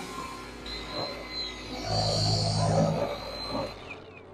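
Dual-action polisher running at raised speed with a foam pad on a glossy panel, buffing in a ceramic detail spray. Its steady motor hum and whine grow louder in the middle.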